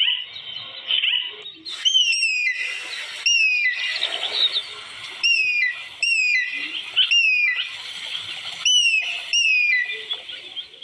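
Birds calling in the open. From about two seconds in, one bird repeats a clear whistled note that falls sharply in pitch, often two at a time, over a constant background chatter of other birds.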